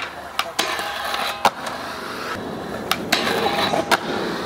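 Skateboard wheels rolling on concrete, broken by several sharp clacks of the board popping, the trucks hitting and grinding along a metal flat rail in a feeble grind, and the landing. The loudest clack comes about a second and a half in.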